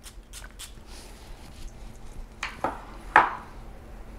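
A Tiziana Terenzi perfume bottle handled with light clicks, then its atomizer sprayed twice in short spritzes about a second apart, the second one the louder.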